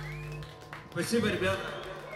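Steady electrical hum from the band's amplifiers between songs, dropping out about half a second in. A brief burst of a voice follows about a second in.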